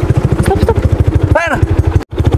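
Small automatic scooter engine running at low revs, a steady rapid pulsing of about twelve beats a second, as the scooter pulls up and stops beside a pedestrian. A short voice calls out about one and a half seconds in.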